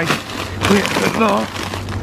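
A plastic bag of frozen dumplings crinkling as it is handled, loudest in the first half-second, with a person's voice over it.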